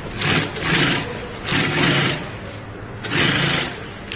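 Richpeace manual edge-binding sewing machine stitching binding onto a quilted mat in short runs, about half a second to a second each, with brief pauses between, over a steady motor hum.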